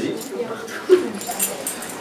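A faint, indistinct voice of an audience member answering from across the room, with some rustling.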